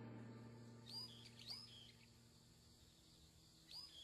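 Near silence with faint bird chirps: a few short calls about a second in, another shortly after, and one more near the end, as a low tail of music fades out.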